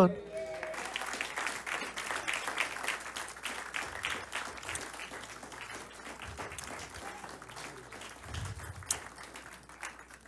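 Congregation applauding: a dense patter of many hands clapping that slowly thins and fades toward the end.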